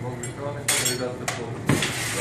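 Steel glassworking hand tools clinking against each other and a metal tray as one is picked out: a few sharp metallic clinks.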